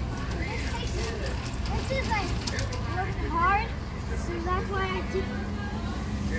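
Indistinct voices in the background over a steady low rumble.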